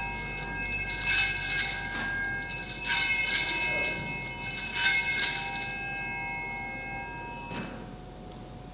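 Altar bells (Sanctus bells) rung at the elevation of the chalice during the consecration: a cluster of small bright bells shaken in repeated surges, then left to ring out and fade near the end.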